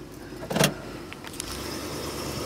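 A 1975 Oldsmobile Delta 88's 350 V8 idling, heard from inside the car. A single loud clunk comes about half a second in, followed by a few light clicks, and the low engine note grows stronger near the end.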